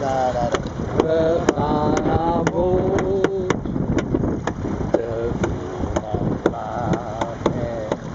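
Men singing a Dutch song unaccompanied, the sung lines coming and going, over a steady rumble of wind on the microphone. Sharp ticks sound about twice a second throughout.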